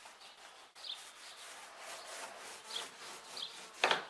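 Paint roller rolling paint onto a plywood boat hull, a steady rubbing that swells and eases with the strokes. A few short faint bird chirps sound over it, and a sharp knock comes near the end.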